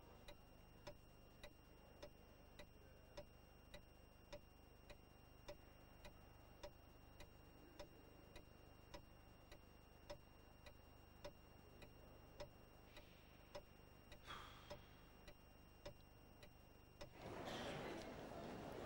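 A clock ticking evenly, a little under two ticks a second, in a near-silent room. A short faint noise comes about fourteen seconds in, and a murmur of chatter rises just before the end.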